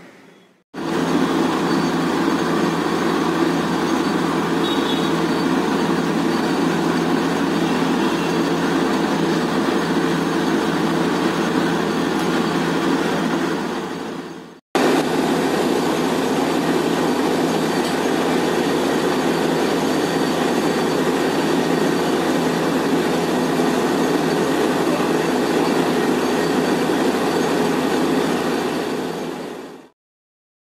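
Borewell drilling rig running loud and steady while water and slurry blow out of the bore. The sound cuts out for a moment about halfway and then carries on unchanged.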